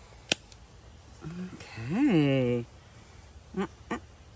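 A single sharp snip of hoof trimmers cutting through a goat's hoof, followed about two seconds in by a drawn-out vocal sound that rises and then falls in pitch, and two short voice sounds near the end.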